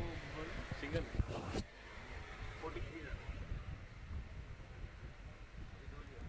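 Faint, distant voices over low outdoor ambience, with a short burst of noise in the first second and a half, then quieter.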